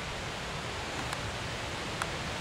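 Steady outdoor background noise, an even rushing hiss with no clear events, with one faint tick about a second in.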